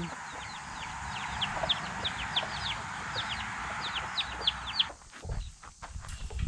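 Chicks peeping in a quick run of short, high, falling peeps, several a second, which stop about five seconds in. Low rumbling follows near the end.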